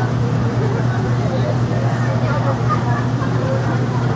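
A steady low hum with indistinct background chatter of people throughout; nobody speaks clearly.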